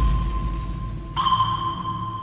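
Electronic sound-design sting for an animated title: a high ringing ping that slowly fades, then a second ping struck just over a second in that rings on, over a low rumble.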